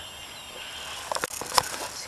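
Faint steady outdoor background noise, then a run of short clicks and rustles from about a second in as the handheld camera is swung around.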